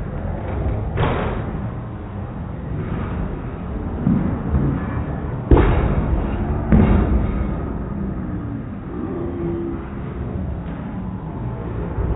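Bowling alley din: a steady low background noise broken by sharp crashes about a second in and twice more between five and seven seconds, the one at about five and a half seconds the loudest, typical of balls and pins on neighbouring lanes.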